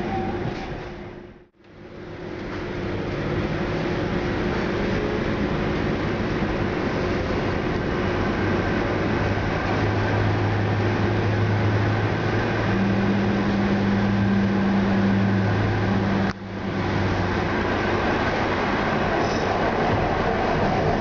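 Manchester Metrolink tram running on the line, heard from inside the driver's cab: a steady rumble of track and running noise with a low electric hum that grows stronger about halfway through. The sound drops away abruptly for a moment twice, early on and again near the end.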